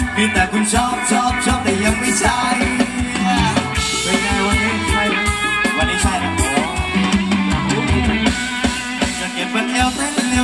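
Live Thai ramwong dance band playing over a PA, with a steady drum-kit beat under melody and singing.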